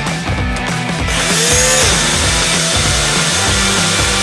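Personal bullet-style blender motor starts about a second in and runs steadily, blending a thick banana, berry and peanut-butter smoothie, over rock background music.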